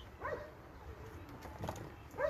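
A brief animal call with a short rising-and-falling pitch about a quarter-second in, then a light click near the end, over a low background.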